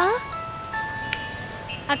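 Mobile phone ringtone playing a simple electronic melody of held notes that step from pitch to pitch. A girl's short "aa" comes at the start, and a single sharp click falls about a second in.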